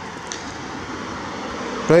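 Steady street noise, like distant traffic, growing slightly louder over the two seconds. A man says "Right" at the very end.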